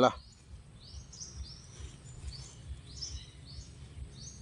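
A bird calling in a run of short, high chirps, about three a second, repeating irregularly over low outdoor background noise.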